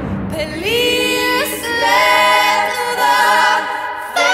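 Female voices singing in several-part harmony, the parts entering one after another and gliding up into held chords.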